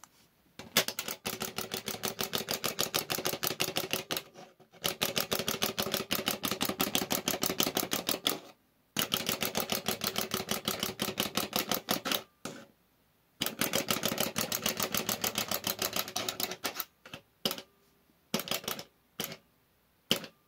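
Plastic wind-up hopping toy running on a hard surface: its clockwork spring motor and hopping feet give a rapid ticking clatter. The clatter comes in stretches of three or four seconds with short pauses between. Near the end it breaks into short spurts and stops as the spring runs down.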